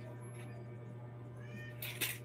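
A short high-pitched call that glides upward about one and a half seconds in, then a brief sharp hissing burst, over a steady low hum.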